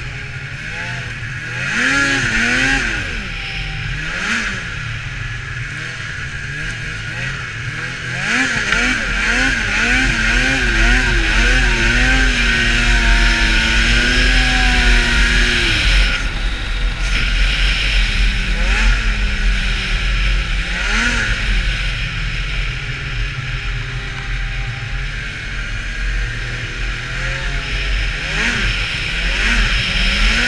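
Polaris SKS 700 snowmobile's two-stroke engine revving as it is ridden: a few short throttle blips in the first seconds, then a long pull from about eight seconds in, climbing in pitch and held high for several seconds before easing to steadier running. A steady hiss runs underneath.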